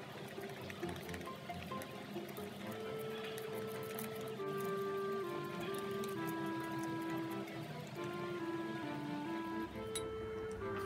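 Background music: a melody of held notes stepping from pitch to pitch.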